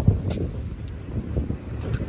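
Wind buffeting the microphone: an uneven low rumble, with a louder bump at the very start.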